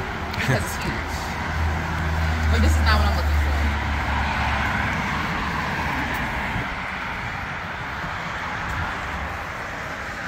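Road traffic: a vehicle passing on the adjacent road, a low rumble and tyre noise that swell to a peak about three seconds in and then slowly fade away.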